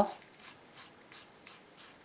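Stiff-bristled Lunar Blender brush dry-brushing paint onto a painted wooden surface: faint scratchy rubbing in short repeated strokes, about three a second.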